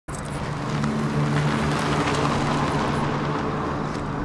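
Street traffic ambience: a steady car engine hum with road noise.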